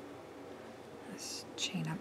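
Faint room tone, then near the end soft whispered speech from the crocheter: two short hissing sounds followed by a brief low hum.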